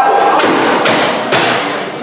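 A table tennis ball bounced three times, sharp taps about half a second apart that ring on in a large hall.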